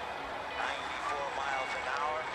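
Baseball play-by-play commentary coming faintly from a phone, over steady background noise.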